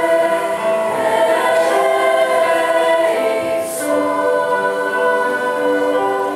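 Middle-school chamber choir of girls' voices singing slow, sustained chords that change every second or two, with a brief sibilant consonant a little past the middle.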